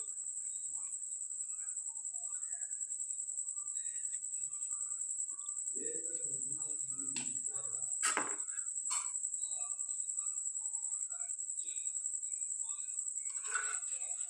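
A cricket chirping steadily in a high, evenly pulsing trill. A faint voice is heard briefly about six seconds in, and two sharp clicks come shortly after.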